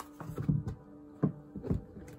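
Oracle cards being shuffled and handled by hand: a series of soft, irregular thuds and riffles, over faint steady background music.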